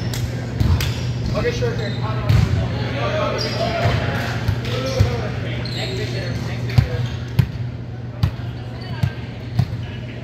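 Echoing voices of volleyball players talking and calling across a gym, with sharp ball thumps every second or two, the loudest a few from about seven seconds on, over a steady low hum.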